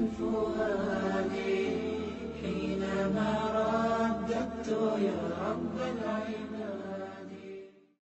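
Melodic vocal chanting, a voice holding long pitched notes over a low steady drone, fading out near the end.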